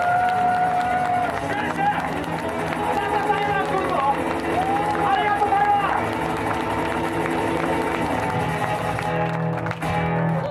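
Live band music with voices singing and calling out over a steady low backing, and the audience clapping along. The sound thins out near the end.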